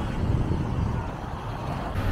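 Steady low noise of road traffic, with no distinct engine note or impacts.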